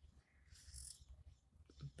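Near silence: room tone, with a faint brief hiss about half a second in.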